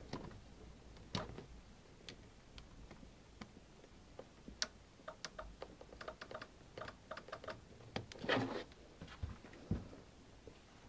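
Faint, irregular small plastic clicks of a blade fuse being worked out of and pushed back into its inline fuse holder on an Eberspacher D2 diesel heater's wiring, done to reset the heater after it failed to start. The clicks bunch together in the second half, with a brief rustle of handling near the end.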